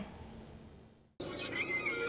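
Quiet background noise fading away, cut by a moment of dead silence about a second in, then faint ambient noise resumes with a brief, faint high wavering sound.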